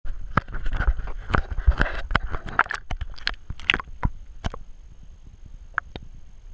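Water splashing and sloshing around a camera held at the waterline, with irregular sharp clicks and knocks from handling. The splashing is busiest in the first three seconds and dies away after about four and a half seconds, leaving a faint underwater hush.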